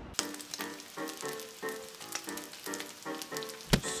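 Background music with short notes repeating about twice a second, over bacon sizzling and crackling in a cast-iron skillet. There is a sharp thump near the end.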